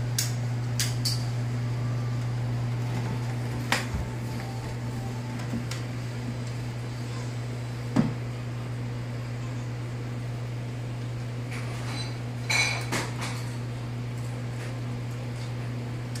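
A few sharp plastic clicks and clacks from a LEGO model's spring-loaded missile shooters being worked and fired, the loudest about halfway through and a quick cluster a few seconds later, over a steady low hum.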